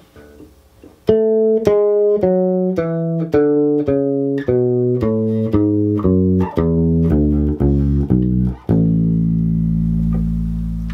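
Electric bass guitar playing a two-octave A major scale descending: fifteen evenly spaced plucked notes, about two a second, starting about a second in and stepping down to a low A that is held and left ringing.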